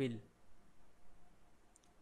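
A couple of faint computer mouse clicks near the end, over quiet room tone.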